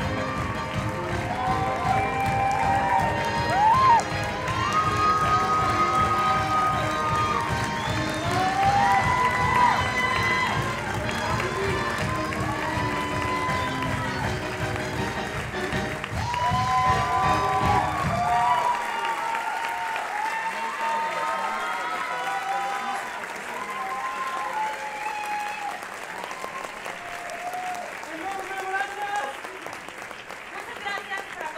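Audience applauding and cheering with many whoops over band music with a steady heavy beat. The music stops abruptly about two-thirds of the way through, and the applause and cheering carry on.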